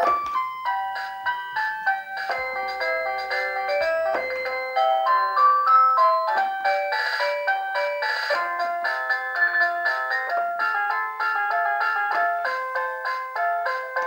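The walker's battery-powered musical play panel plays an electronic tune, set off by a press of one of its buttons. It is a quick run of short, clear electronic notes that plays without a break, with a brief noisy burst about seven seconds in.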